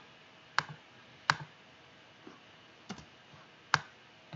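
Computer mouse clicks: four sharp, separate clicks spread over a few seconds, against a quiet room background.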